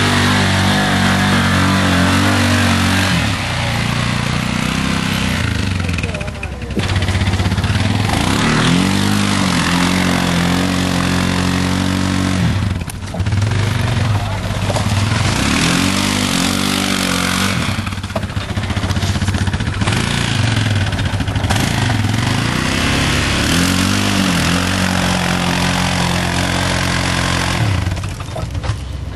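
Yamaha Rhino side-by-side's engine revving hard over and over, the pitch climbing and holding for a few seconds each time, as it struggles to drive through a deep mud rut.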